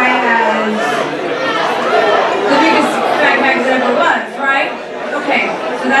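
People talking amid crowd chatter in a large, echoing hall.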